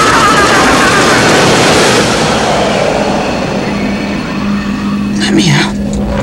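Film trailer sound mix: a loud, dense rushing noise that thins out after about two seconds, then a low steady tone held until just before the end, with a few brief sharp sounds near the end.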